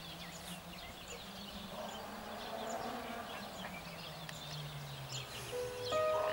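Small birds chirping in many short, high calls over a low steady hum. Piano notes come in near the end.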